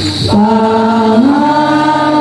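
A congregation singing a slow hymn together in long held notes. A new phrase starts just after a brief pause at the beginning, and the melody steps up about a second in.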